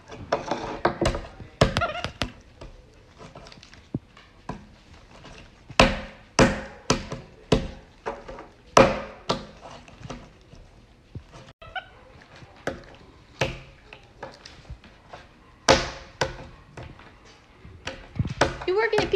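A hard plastic container and its lid knocking and clattering on a wooden floor as a capuchin monkey handles them: a string of irregular sharp knocks, with a run of louder ones in the middle and one near the end.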